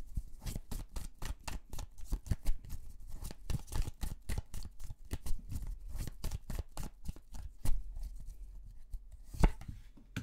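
A tarot deck being shuffled by hand, overhand: a quick, uneven patter of cards slapping against each other, several a second, with one sharper click near the end.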